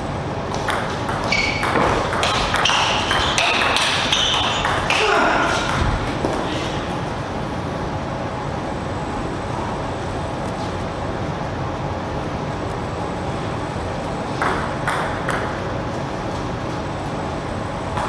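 Table tennis rally: the ball clicking off the rackets and table in quick succession for a few seconds, then stopping as the point ends. Near the end come a few more clicks of the ball bouncing.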